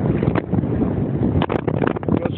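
Wind buffeting the camera microphone, a rough rumbling noise with a few short louder surges.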